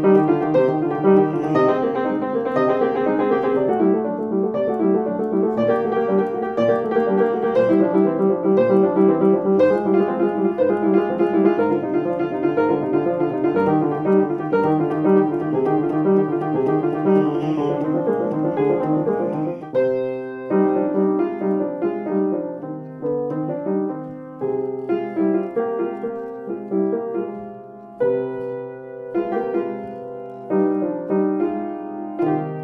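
Upright piano played with both hands: a fast, unbroken stream of broken-chord notes for about twenty seconds, then a sparser, slower passage of separate chords.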